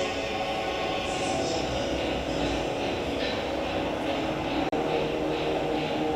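Soundtrack of a projected theatre-show video played over loudspeakers in a hall: a steady, droning sustained sound with many held tones and a hiss, broken by a very brief dropout about three-quarters of the way through.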